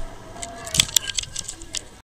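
Handling noise from the recording camera being grabbed and moved: a quick run of clicks, knocks and small rattles, loudest about a second in.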